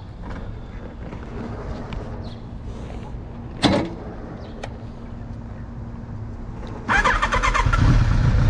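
A single sharp knock about halfway through low handling noise. About a second before the end, the starter of the 2001 Kawasaki ZRX1200R cranks and its carbureted inline-four catches and runs loud and steady, starting warm without the choke.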